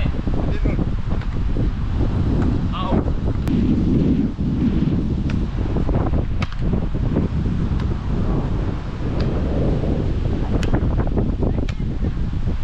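Wind buffeting the microphone in a steady low rumble. Several sharp slaps of hands and forearms striking a beach volleyball during a rally come through it.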